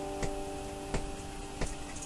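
An acoustic guitar's held chord fading away, with three light ticks at an even beat, about two-thirds of a second apart, keeping time between strummed phrases.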